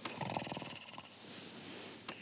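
One rattly snore from a sleeping man, lasting about half a second near the start, followed by quiet.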